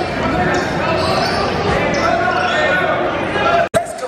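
Crowd chatter in a gymnasium: many voices talking at once, echoing in the large hall. The sound cuts out abruptly for an instant near the end.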